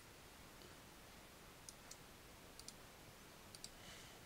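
Faint clicks of a computer pointing device, coming in three quick pairs in the second half, as anchor points are placed with Illustrator's pen tool to draw a pattern outline; otherwise near silence.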